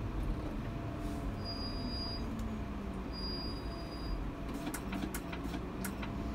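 Double-decker tour bus's engine running as it drives along, its note dropping and then rising again. There are several sharp clicks or rattles near the end.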